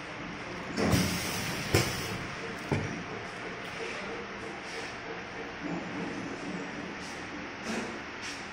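Hot stamping press cycling on a fishing jig: a hissing surge about a second in as the press moves, a sharp clank soon after and a lighter knock a second later. After that the machine hums steadily, with a few light clicks as the stamped lure is handled.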